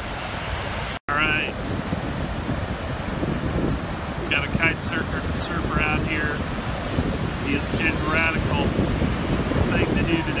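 Wind buffeting the microphone over the steady rush of breaking surf, with a short gap in the sound about a second in. Brief, wavering high-pitched calls come through several times.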